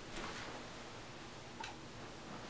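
Faint, scattered clicks and light rustling as a paperback book is handled and its pages are leafed through.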